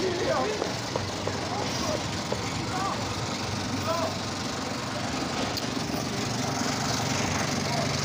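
Steady city street noise with a low engine hum from idling vehicles, and faint distant voices in the first half.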